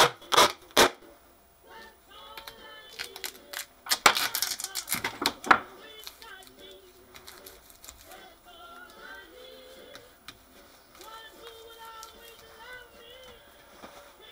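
Tape being pulled off a roll in loud, quick rips, a few at the very start and a longer run about four to five and a half seconds in. Music with singing plays quietly in the background.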